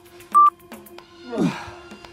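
Interval timer's countdown beep, a short high tone, about half a second in, marking the last second of the work period; about a second later comes a short falling sweep as the period ends.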